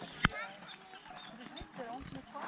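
Children's voices and calls at an outdoor playground, with one sharp click about a quarter of a second in.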